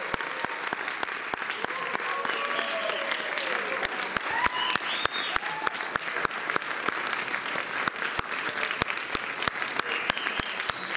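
Audience applauding, steady dense clapping, with a few voices calling out over it.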